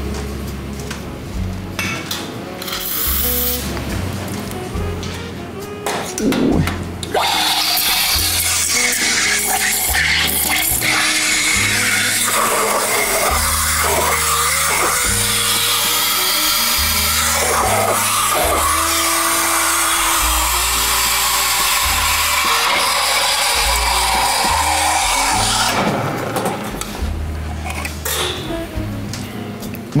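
Espresso machine steam wand heating a spiced tea and juice drink in a stainless steel pitcher: a loud, steady hiss that starts suddenly about seven seconds in and stops a few seconds before the end, over background music with a beat.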